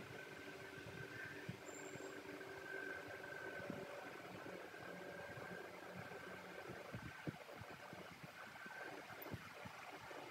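Faint steady mechanical hum with a few faint steady tones over low hiss, with a few light ticks in the second half.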